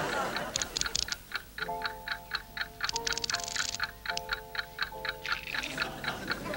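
Clock-like ticking at about four ticks a second, the ticking of a time bomb that is still live. From about a second and a half in, sustained musical notes in a chord join it and shift twice before fading near the end.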